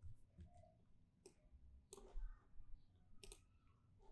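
Faint, scattered clicks of a computer keyboard being typed on, a handful of separate keystrokes.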